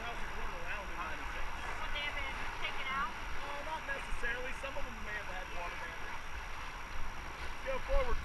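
Steady rush of river water through rapids around the raft, with a low wind rumble on the microphone and faint voices talking under it.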